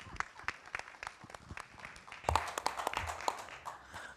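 Audience applauding, scattered claps at first that thicken into fuller applause about two seconds in.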